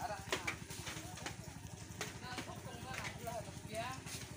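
Bare feet splashing and squelching in shallow muddy water, a string of irregular short splashes.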